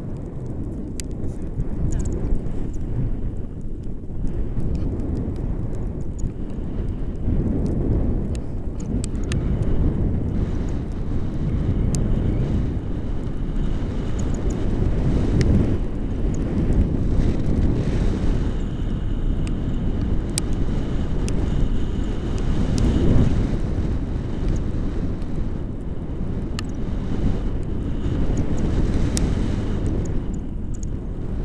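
Wind buffeting an action camera's microphone in paraglider flight: a loud, rough rumble that swells and eases, with scattered faint ticks.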